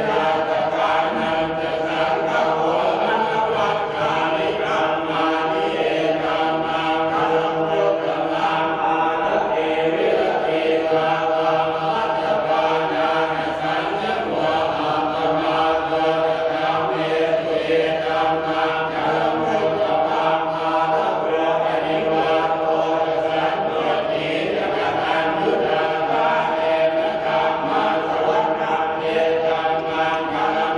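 Buddhist monks chanting together in steady unison, the chant running without a break.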